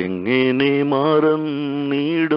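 A man singing a Malayalam Christian devotional song, holding long notes with a wavering vibrato after a short breath break. The sound is narrow and thin, as heard over a telephone line.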